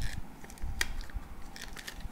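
Hands pressing tape onto the flaps of a folded paper cube: paper crinkling and a few sharp clicks, the loudest a little under a second in, with dull low thumps of handling.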